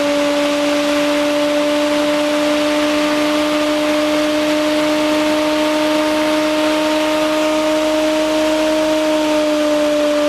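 Bedini-Cole window motor running at speed off its battery: a steady, turbine-like whine over a hiss, its pitch sagging slightly near the end.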